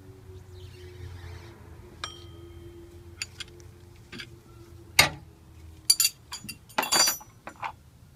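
Steel combination wrench clinking and knocking against metal engine parts while the serpentine belt tensioner is worked. A single ringing clink comes about two seconds in, then a run of sharper clinks and knocks, the loudest about five seconds in.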